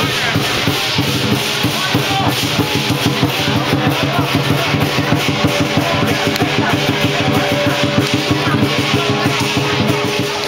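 Lion dance drum beaten in a fast, steady rhythm with crashing cymbals ringing over it.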